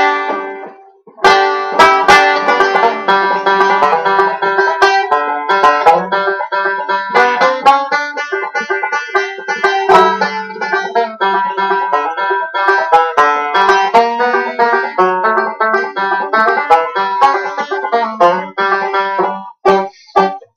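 An old, home-rebuilt banjo picked solo, playing a simple tune. After a brief pause about a second in, the notes run on continuously until just before the end.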